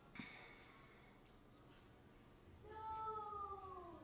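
A woman's long, drawn-out whimpering "nooo" that slowly falls in pitch, a pained reaction to the sting of 30% glycolic acid on her face. A brief short vocal sound comes just as it begins.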